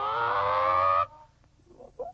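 A cartoon barnyard animal's call: one held, pitched call that rises slowly and cuts off abruptly about a second in.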